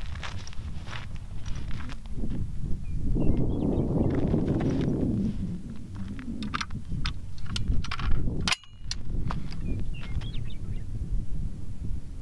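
A rifle being handled and set up on a shooting rest: scattered clicks and knocks, a longer rustle about three to five seconds in, and one sharp, loud clack about eight and a half seconds in, which fits the bolt slamming home on a single-loaded round. Wind rumbles low on the microphone throughout.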